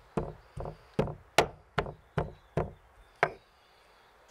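A stone pestle pounding walnuts in a stone mortar: about eight dull knocks, two or three a second, stopping a little over three seconds in.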